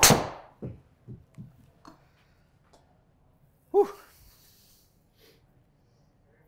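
A Cobra Darkspeed Max driver striking a golf ball, one sharp, loud crack with a short ring-out. Several softer thuds follow over the next two seconds.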